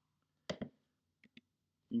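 A sharp double click about half a second in, followed by two faint ticks a little over a second in, in an otherwise silent pause.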